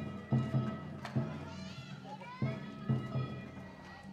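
Japanese festival music around a kiriko lantern float: drum beats coming in pairs under a held steady tone, with children's voices. It fades away near the end.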